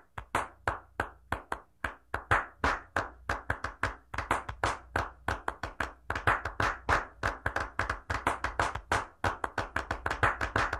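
Quick, rhythmic hand clapping, about four to six claps a second and at times faster, over a faint steady low drone.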